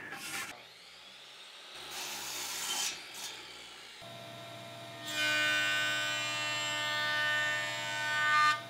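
A jointer starting up about four seconds in and then running steadily, a hum with a high whine, while a cherry board is pushed across its cutterhead under a push block. Before it starts there is only faint rustling.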